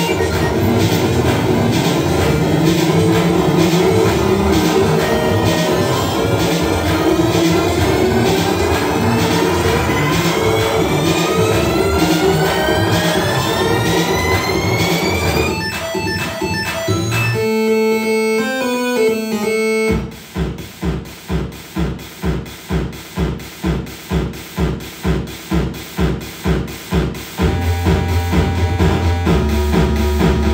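Loud, dense electronic music played live on button controllers and handheld devices, with several slow rising pitch sweeps. Past the middle it breaks into a few stepped held tones, then settles into a steady pulsing beat of about two and a half pulses a second.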